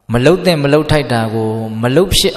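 A Buddhist monk's voice reciting in a sing-song, chant-like intonation. It starts abruptly and holds one long level note from about one second in to nearly the end.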